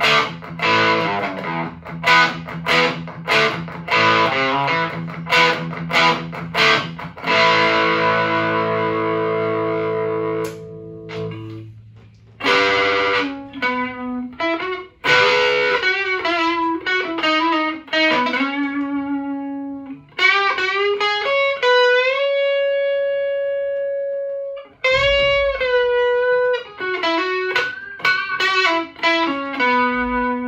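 Gibson Les Paul electric guitar played through a plexi-style Marshall valve amp driven for saturation, its level brought down to home volume by a volume box in the effects loop. Rhythmic chopped chords for the first seven seconds and one chord left ringing, then single-note lead lines with string bends and a long held bent note, ending on a sustained note.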